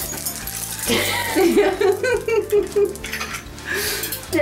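Glass crystals of a hanging chandelier jingling as it is turned onto its ceiling mount. About a second in, a woman's wordless voice rises over it for roughly two seconds.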